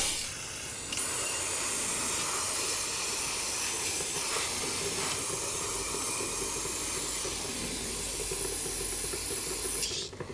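Aerosol brake cleaner spraying onto a motorcycle's rear brake caliper in one long, steady hiss that starts about a second in and cuts off just before the end.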